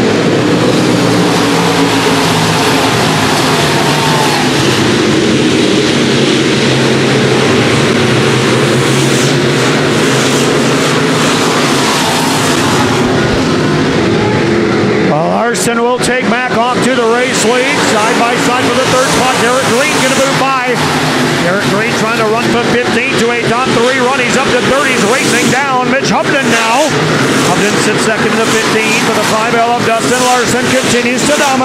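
A pack of dirt-track stock cars racing, many V8 engines running together at speed. About halfway through, the sound turns choppier, with engine notes wavering up and down and sharp cracks mixed in.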